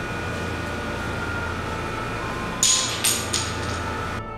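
Wooden divination moon blocks (jiaobei) thrown down and clattering, three sharp knocks in quick succession about two and a half seconds in, over a steady hum: a divination cast answering a yes-or-no question.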